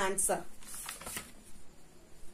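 Textbook pages being turned by hand: a few quick papery rustles within the first second or so.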